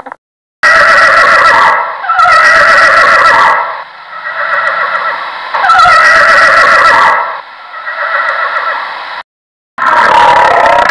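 Horse whinnying: three loud neighs, each falling in pitch at its end, with quieter neighing between them.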